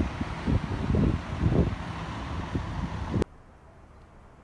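Wind buffeting the microphone in irregular low gusts over outdoor street noise, cutting off suddenly a little after three seconds to a much quieter background.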